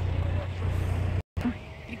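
Steady low rumble of street traffic, broken off abruptly just over a second in by a brief dropout, after which a quieter outdoor hum continues.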